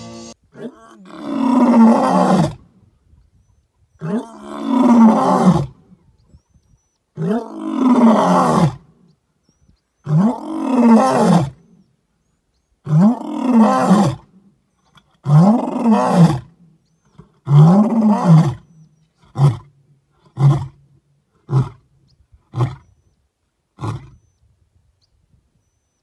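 Male lion roaring: seven long roars, each rising and then falling in pitch, followed by five short grunts about a second apart, the usual close of a lion's roaring bout.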